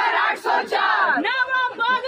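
A group of women shouting a political slogan together, many high voices overlapping loudly, with a brief break about a second in.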